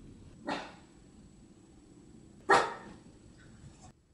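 Small Lhasa Apso–Shih Tzu–poodle mix dog barking twice, about two seconds apart; the second bark is louder.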